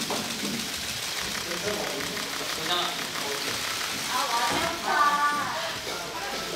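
Indistinct voices in a hall, with a clearer voice about four seconds in.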